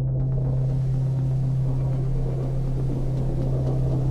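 Steady low drone of trailer sound design, with a soft rushing hiss that comes in just after the start.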